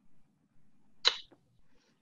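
A quick, sharp intake of breath about a second in, followed by a fainter second one, between stretches of near-silent room tone.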